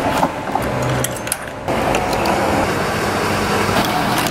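Steady vehicle and traffic noise at a petrol station, with a few short clicks as the car's fuel filler flap is handled and the pump nozzle is lifted from the dispenser.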